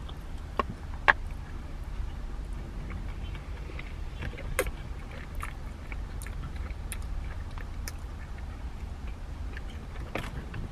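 A person biting into and chewing a loaded chili dog, with scattered wet mouth clicks and one sharp click about a second in, over a steady low rumble in a car's cabin.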